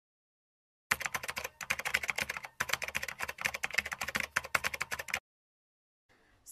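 Rapid typing on a computer keyboard: quick, irregular key clicks starting about a second in, with a brief break midway, cutting off suddenly about a second before the end.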